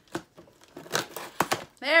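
Scissors cutting into a cardboard box, a few sharp snips and scrapes of the blades through the cardboard and tape.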